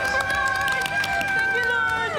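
A woman's long, high-pitched scream of joy, held on one note and trailing down at the end, at passing the audition.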